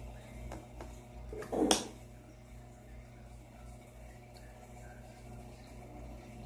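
A single short thump about one and a half seconds in, over a low steady hum, with a couple of faint clicks just before it.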